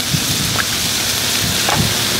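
Steady sizzling of chicken pieces, onions and mushrooms frying in oil on a hot flat-top griddle.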